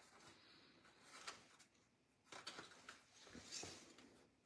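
Near silence, with faint rustles and soft brief clicks of ribbon and paper being handled as a ribbon is tied around a paper treat holder.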